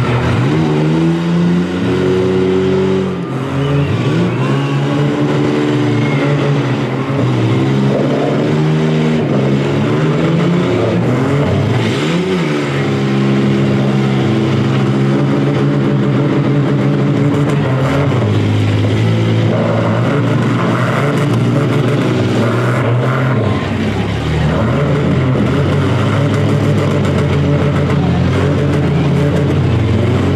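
Demolition-derby minivan engines held at high revs, rising and falling in several swells as the cars push against each other with wheels spinning in the dirt, with an occasional bang from a hit.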